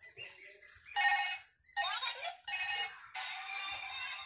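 Pink toy mobile phone playing an electronic ringtone tune in three short bursts with brief gaps between them.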